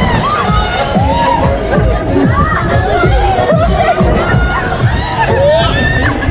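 Many riders screaming and shouting together on a swinging, spinning fairground thrill ride, with overlapping yells rising and falling in pitch over a steady low rumble.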